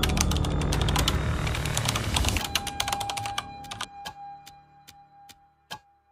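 Sound-design clicks, dense and rapid like fast typing, over a low rumble that stops about two and a half seconds in. After that the clicks thin out to a few scattered ones while a steady high tone holds, and everything cuts off at the end.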